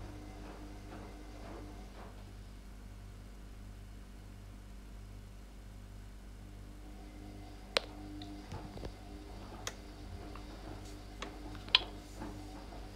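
A low, steady electrical hum, with a few sharp clicks in the second half, the loudest just before the end.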